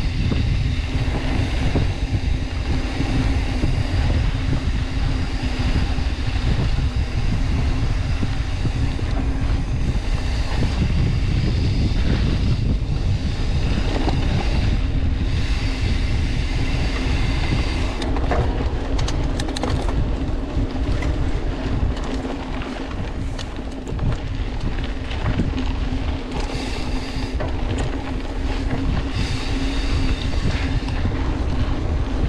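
Mountain bike riding a dirt trail, heard from a handlebar-mounted camera: steady wind buffeting on the microphone and tyre rumble on dirt, with a steady hum. From about the middle on, sharper clicks and clatter from the bike over bumps come more often.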